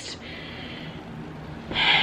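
A pause with faint room noise, then a woman's quick, audible in-breath near the end.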